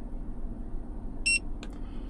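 A single short, high electronic beep from the 2024 Toyota Tundra's integrated dashcam, about a second in, as its Action button is held down, signalling that video recording has started. Two faint clicks follow it.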